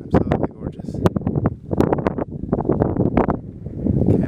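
Gusty wind buffeting the camera microphone in loud, irregular blasts.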